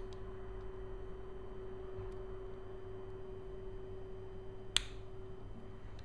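A small precision screwdriver working a screw in a metal lens barrel, with one sharp click near the end. Under it runs a faint steady tone and hum that fade just before the end.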